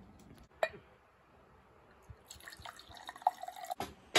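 A single sharp click about half a second in, then a quiet stretch, then faint rustling with small ticks in the second half.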